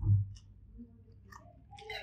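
A person chewing a mouthful of egg fried rice close to the microphone, with small wet mouth clicks and a low thump just at the start.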